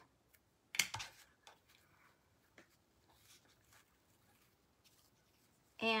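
Quiet handling of a fabric ribbon bow on a wooden sign. There is one short, sharp rustle about a second in, then faint scattered taps and rustles as a bamboo skewer presses the ribbon folds into place.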